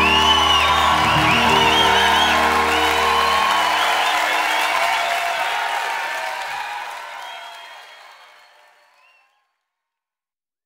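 A live band's final chord rings out under an audience cheering and applauding. The low notes stop about three and a half seconds in, and the cheering fades out near the end.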